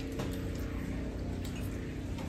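A metal spoon scooping soup from a bowl, with one light clink, over a steady low hum.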